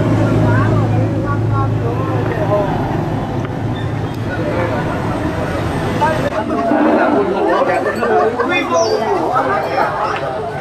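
Street traffic with a steady low engine hum under people talking, giving way about six seconds in to many voices chattering at once.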